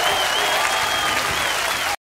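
Studio audience applauding at the end of a song; the sound cuts off abruptly at the very end.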